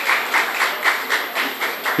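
Audience clapping together in an even rhythm, about six claps a second, welcoming a faculty member as he is introduced.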